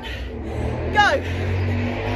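A woman's voice gives one short spoken call, falling in pitch, about a second in, over a steady low rumble.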